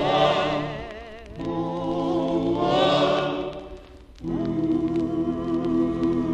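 Vocal group and orchestra holding long sung chords with a wavering vibrato in two swells. After a brief dip a little after four seconds, steady sustained chords begin.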